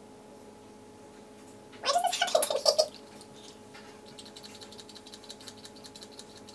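Faint, rapid clicking of a foundation bottle's pump being pressed and worked by hand; the pump is broken and will not dispense. About two seconds in there is a brief, louder vocal sound from the person.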